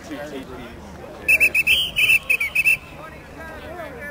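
Referee's whistle blown in a quick string of short, sharp blasts lasting about a second and a half, starting just over a second in, stopping play for a foul.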